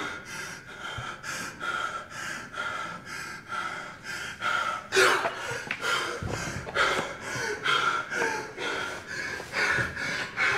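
A man breathing hard and fast through his mouth, about two rasping breaths a second, with one louder gasp about halfway through.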